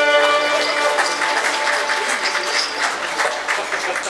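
The final held chord of a song dies away within the first second, and audience applause follows: many hands clapping in a dense, steady patter.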